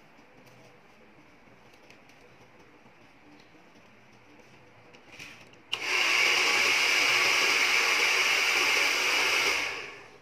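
A handheld hair dryer is switched on about six seconds in and blows steadily with a strong hiss for about four seconds, then dies away near the end. Before it comes on there is only faint background noise.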